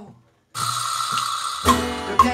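Live band of acoustic guitar, upright double bass and drum kit playing a song. The sound cuts out completely for about half a second near the start. It comes back as a thin, high cymbal wash with no bass, and the full band with bass and guitar returns about 1.7 seconds in.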